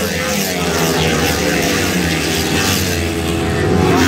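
A pack of flat-track racing motorcycles racing past, several engines running at once in a loud, steady drone.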